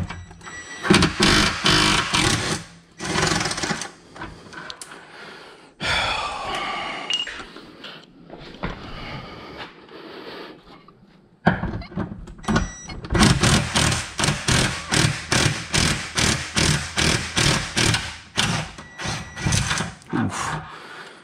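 Hand tools on the Tesla Model 3's rear drive unit mounting bolts: runs of sharp knocks, about three a second, near the start and again through most of the second half, as the unit is worked free.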